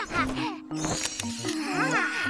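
Bouncy cartoon jingle with a plucky bass line, over short, swooping vocal cries from the cartoon goat characters.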